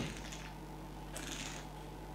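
Quiet room hum with one soft hiss of breath about a second in, from a wine taster with a mouthful of red wine.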